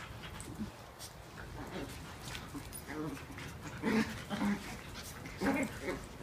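A husky and a small Maltese-Shih Tzu mix at play, giving a few short whimpering vocal noises in the second half, the clearest about four seconds in and just before the end.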